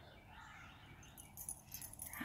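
Faint background of dogs barking and children yelling, with a few short, sharper sounds in the last second.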